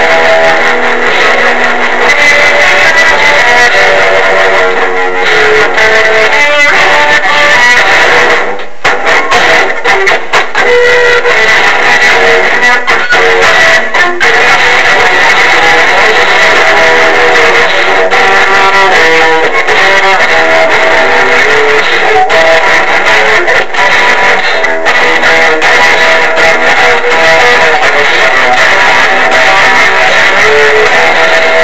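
Electric guitar played continuously, with a short break about nine seconds in.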